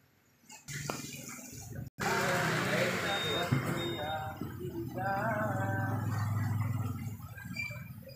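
Indistinct voices with music playing behind them, after a near-silent first half second and with a brief sudden cut-out about two seconds in.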